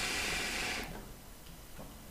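A draw on an Amy Snow Breeze hookah through an ice-filled mouthpiece: a steady hiss of air pulled through the water in the base, stopping about a second in.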